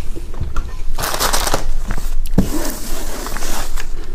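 Close-miked mouth sounds of someone chewing soft glutinous rice dumplings in brown sugar syrup, coming in uneven noisy bursts with small clicks.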